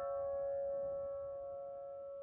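Yamaha grand piano's held notes ringing on and slowly dying away, one mid-range note the strongest, with no new keys struck.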